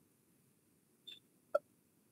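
Near silence with a faint hiss, broken by two brief faint clicks about half a second apart, the second one sharper.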